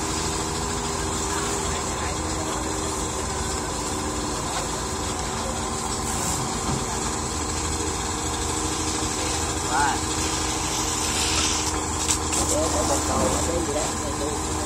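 A large engine running steadily at idle, with a constant even hum, and faint voices in the background.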